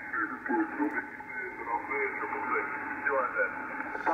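A man's voice on a 40-metre lower-sideband signal, received through a Yaesu FTdx5000MP transceiver as the VFO is tuned onto the station. The voice is thin and cut off above the speech range, with a faint steady tone under it. There is no carrier, so the voice only sounds clear once the receiver is tuned to the station's suppressed-carrier point.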